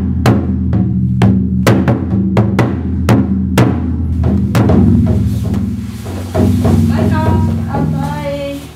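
Taiko drum strikes, roughly two or three hits a second, over music with sustained low tones.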